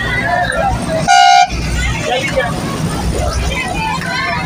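One short, loud vehicle horn toot about a second in, over the low rumble of a moving bus and passengers' chatter.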